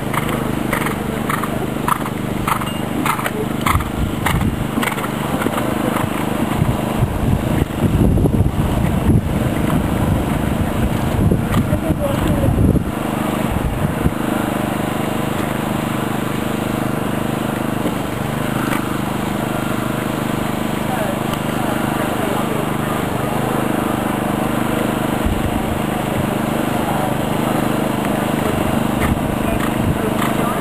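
Horse cantering on sand arena footing, its hoofbeats coming about twice a second over the first few seconds, against background voices and a steady low hum. Heavier low thumps come through for several seconds in the middle.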